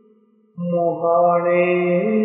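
A man's voice chanting Punjabi Sufi poetry in long held notes. A sustained note fades away, and about half a second in a new one starts and is held steadily.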